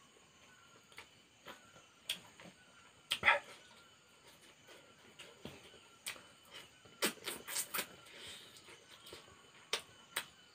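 Close eating sounds of a man chewing duck meat eaten by hand: scattered mouth clicks and smacks, one louder about three seconds in and a quick run of them about seven seconds in.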